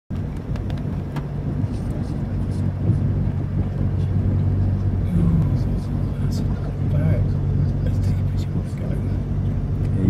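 Ford Ranger pickup heard from inside the cab, its engine running with a steady low hum as it drives through floodwater, with scattered short splashes and ticks of water against the truck.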